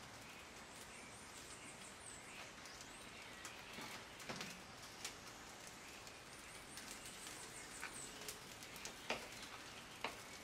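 Quiet background with a few soft clicks from a knife working through a bone-in beef chuck on a cutting board. Two runs of faint, high, repeated bird chirps sound behind it, one near the start and one near the end.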